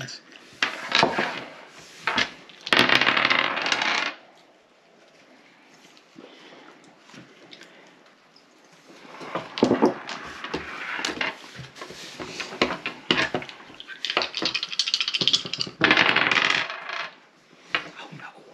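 Several dice shaken and rolled onto a wooden tabletop, clattering in three bouts of a second or two each.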